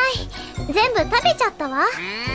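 Anime soundtrack: high-pitched cartoon character voices gliding up and down in exclamations over light, tinkling background music.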